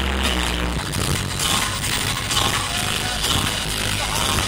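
Live electronic dance music played loud over a venue PA, heard from among the crowd: a deep held bass note in the first second, then a steady driving beat.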